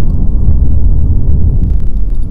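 Steady low rumble of a car driving slowly down a street, heard from inside the cabin: road and tyre noise with no engine note standing out.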